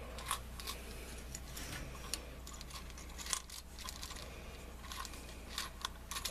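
Faint, scattered light clicks and taps of UCO waterproof storm matches being packed into a small plastic match case, over a low steady hum.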